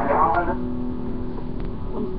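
A person's voice, ending in a held steady tone, over constant low background noise.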